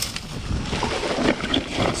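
Steady rushing noise of an electric mountain bike being ridden down a leaf-covered dirt trail: wind over the helmet-camera microphone and tyres rolling on the ground, with a sharp click at the start.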